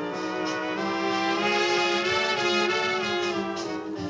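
Swing big band playing an instrumental passage on a 1940 recording, the brass section of trumpets and trombones holding long chords over a steady level.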